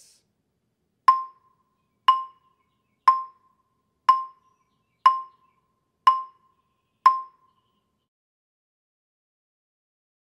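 A wooden-barred mallet keyboard instrument struck with yarn mallets: the same note seven times, about once a second, each with a short ring. These are even full strokes, each stroke sounding the same, the correct technique for a full, dark tone.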